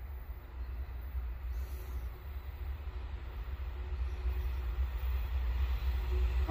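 Low rumble of an approaching diesel-hauled freight train, still out of sight, growing steadily louder.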